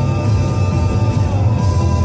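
A song playing on a radio broadcast, with held notes over a full low end.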